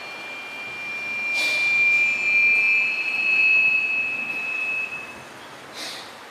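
A sharp knock, then a high, clear ringing tone that holds for about four seconds and stops suddenly; a second knock comes near the end.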